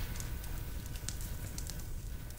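Quiet pause with no speech: a low steady hum with faint scattered crackles.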